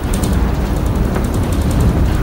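Steady low rumble of a building shaking in an earthquake, with faint rapid rattling from the swaying ceiling light fixtures.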